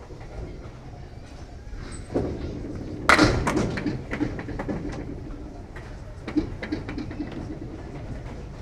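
Candlepin bowling ball rolling down a wooden lane and crashing into the thin candlepins about three seconds in with a loud crack. Pins clatter and rattle against one another and the deck for several seconds after.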